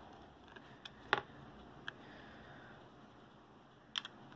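A few light, sharp clicks and taps from handling a Rockit 99 CPU delid tool, the sharpest about a second in and another near the end, over faint hiss.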